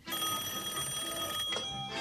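Telephone bell ringing, a steady high ring that stops about a second and a half in when the handset is lifted to answer the call.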